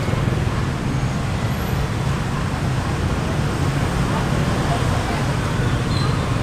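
Steady city street traffic: a continuous low hum of passing motorbikes and cars.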